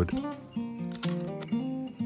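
Acoustic guitar music, plucked notes changing about every half second, with a sharp knock about halfway through.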